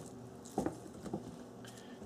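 Braided-sleeved power supply cables being handled: a few faint rustles and light taps as one bundle of cables is set down on the table and another is picked up, the loudest a little over half a second in.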